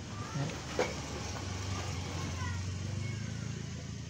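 Low engine rumble of a vehicle swelling and then easing over a few seconds, with a sharp click about a second in.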